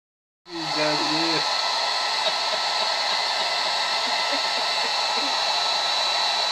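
Handheld hair dryer switching on about half a second in and then blowing steadily, a rushing air noise with a high whine. A person's voice is heard briefly just after it starts.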